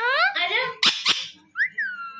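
Alexandrine parakeet calling: a rising call, two sharp harsh squawks a quarter second apart, then a whistle that dips and rises again.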